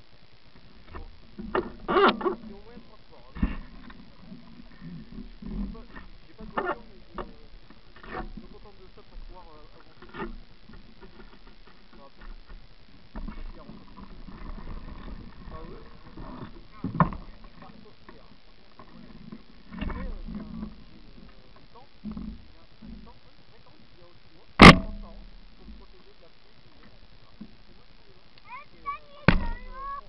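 Indistinct voices of people nearby, with scattered sharp knocks; the loudest knock comes about five seconds before the end, and a second strong one just before the end.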